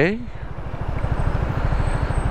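Zontes 350E scooter's single-cylinder engine running at low speed, a steady low pulsing that grows a little louder about half a second in as the scooter creeps forward, with some road and wind noise.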